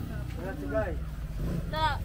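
Brief bits of people talking, over a steady low rumble.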